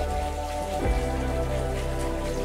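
Soft background music of slow, held notes that shift now and then, over a steady fine patter like light rain.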